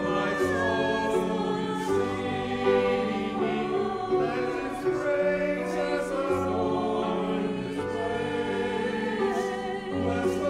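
Mixed choir of men's and women's voices singing a hymn in harmony, holding long notes and moving from chord to chord.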